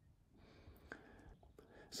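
Near silence, with a faint breath and a small mouth click from the narrator before speaking again.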